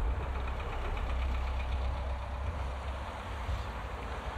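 A double-decker bus's engine running as the bus passes close by, a deep steady drone over the noise of road traffic that eases off near the end.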